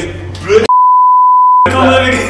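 A single electronic censor bleep: one pure, steady, high tone about a second long, near the middle, with all other sound cut out beneath it. It masks a word shouted in anger.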